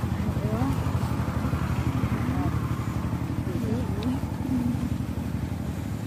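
An engine running steadily, a low drone with a fast, even pulse, with faint voices over it.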